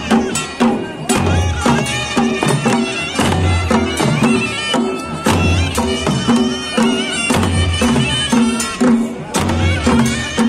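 Traditional Kullu festival band: dhol and nagara drums keep a steady beat with a heavy low stroke about every second and a quarter, under a reedy wind instrument playing a wavering, ornamented melody.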